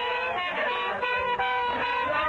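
Several voices singing together in high, held tones, some of the notes gliding in pitch.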